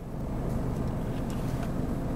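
Steady low rumble inside a 2005 Chrysler PT Cruiser's cabin, with a faint hiss above it and no distinct events.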